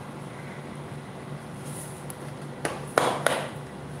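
Three short knocks close together about three seconds in, the middle one loudest, over a steady low hum.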